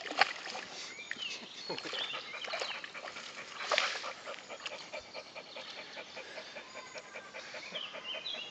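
Dog panting quietly while lying in a shallow muddy puddle, with faint sloshing of the water around it.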